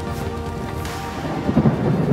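Background music with held tones, then a low rumble of thunder that swells up about one and a half seconds in.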